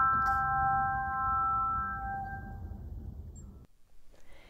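Handbell choir's chord of several bell tones ringing on together and dying away, fading out about three seconds in.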